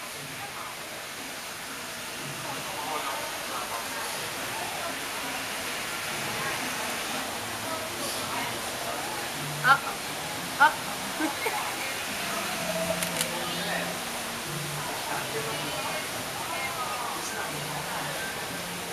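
Steady rush of running water in an animal enclosure, with indistinct chatter of people behind it. Two short, sharp high sounds stand out near the middle, about a second apart.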